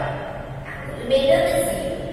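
A woman speaking, a stretch of narration, over a steady low hum.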